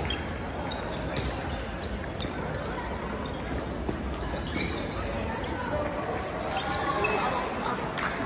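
Scattered light clicks of table tennis balls bouncing on tables and the floor, over the steady hubbub of many voices in a large, echoing hall.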